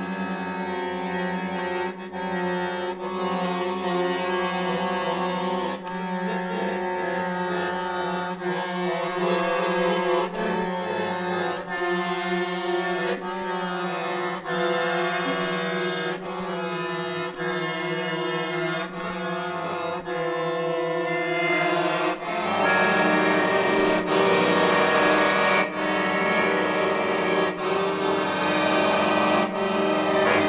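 Piano accordion playing sustained chords over a held low note, in free improvised jazz; the sound grows louder and fuller about two-thirds of the way through.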